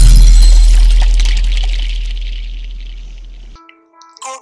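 Logo-intro sound effect: a deep bass boom with a bright crackling sparkle on top, fading slowly for about three seconds and then cutting off. A short electronic chime of a few steady tones starts just before the end.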